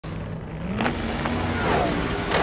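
Intro sound effect of a car engine running and revving, its pitch rising a little under a second in and falling away near the end, with two sharp cracks over it.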